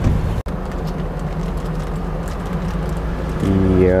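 Steady low rumble of a motor vehicle engine running nearby, with faint rustling clicks. About three and a half seconds in, a louder engine hum with a steady, slightly falling pitch sets in.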